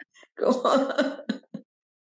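A woman laughing for about a second, then stopping.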